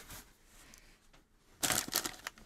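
Box packaging rustling and crackling as the box is opened, starting about one and a half seconds in after a quiet start.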